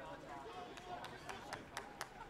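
Faint open-air field sound: distant players' voices calling on the pitch, then about five sharp taps in quick, uneven succession.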